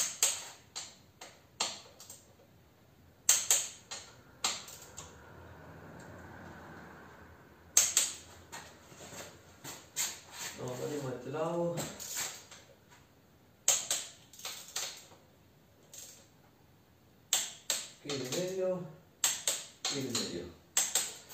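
Scattered sharp metallic clicks of a wrench working on a motorcycle fork's lower triple-clamp pinch bolts as they are tightened to about 15 Nm. A brief mumbled voice comes twice, near the middle and near the end.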